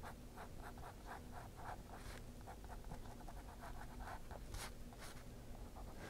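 Fine-tip ink pen scratching on sketchbook paper in quick repeated strokes, about three or four a second, as lines are drawn into a corn husk. The sound is faint.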